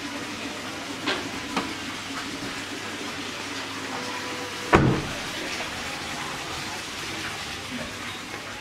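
A car door shutting with a single heavy thump a little before the five-second mark, preceded by two light clicks, over a steady background hiss.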